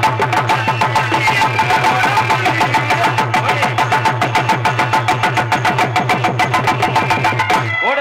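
Live folk band music for a stage dance: a fast, steady beat on hand drums under held harmonium notes. The music breaks off briefly near the end.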